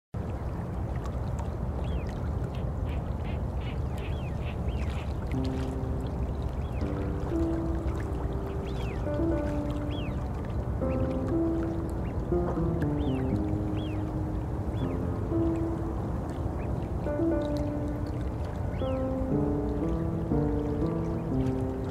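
Steady rushing of river water with short high chirps scattered through it; a slow melody of held notes comes in about five seconds in.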